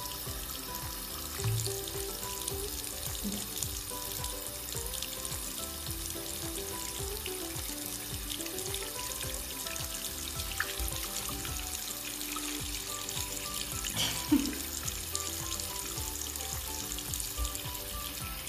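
Thin stream of tap water running into a sink and splashing onto a bearded dragon's back, a steady hiss. Soft music with a stepping melody plays underneath.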